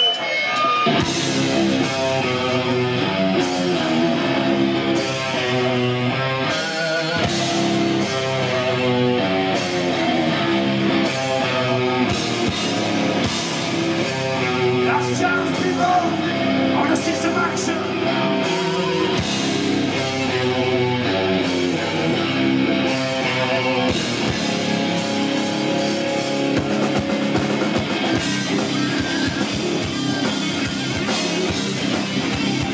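A heavy metal band playing live, led by electric guitar.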